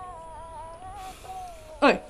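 A soft, slow melody of a few long held notes from the film's background score. Near the end a woman starts to speak.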